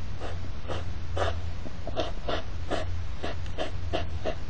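European hedgehogs snorting during the courtship circling known as the hedgehog carousel: short huffs in a steady rhythm, about two to three a second. A low steady hum runs underneath.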